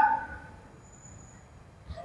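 A short pause in a man's speech: his last word dies away with a little room echo, then faint room tone, and his voice starts again at the very end.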